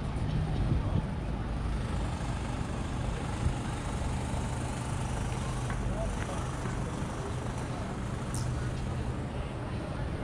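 Busy city street ambience: a steady low rumble of traffic and vehicle engines, with indistinct voices of passers-by. A brief high squeak sounds about eight seconds in.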